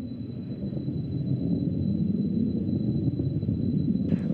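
Distant rumble of the Soyuz rocket's first stage, its four strap-on boosters and core engine firing in flight: a low, even noise without a tone that grows slightly louder.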